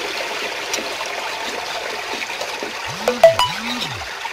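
Salt water and paddy seed pouring from an aluminium vessel through a sieve into a basin: a steady splashing trickle. About three seconds in, a brief louder sound with a few short ringing tones cuts in.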